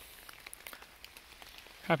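Light rain: scattered raindrops ticking over a faint steady hiss. A man's voice starts near the end.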